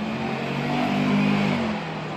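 A motor vehicle's engine running as it drives past close by. The note holds steady, peaks about the middle and fades away shortly before the end.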